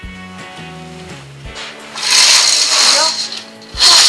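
Window curtain being drawn open, its runners sliding along the rail in a loud rasping rattle from about a second and a half in, with a second short burst near the end. Background music plays underneath.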